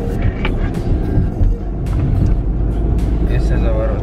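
Steady low rumble of road and engine noise inside a moving car's cabin, with a few short clicks; a voice starts up near the end.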